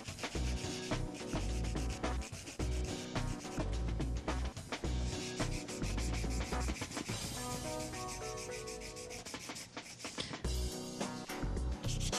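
Hand nail file rasping back and forth across a hardened acrylic sculpted nail in quick, repeated strokes, shaping the nail's tip.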